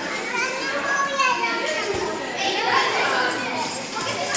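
Many children's voices chattering and calling out over one another in a large hall.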